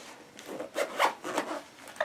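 A pencil case being handled: a series of short rubbing, scraping noises.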